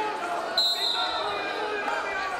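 A referee's whistle gives one short, steady blast about half a second in, the signal that restarts the wrestling bout.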